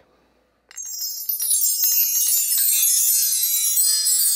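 LP bar chimes (a mark tree) played: about a second in, a long run of many bright metal tones starts high and spreads downward, then rings on as the bars swing.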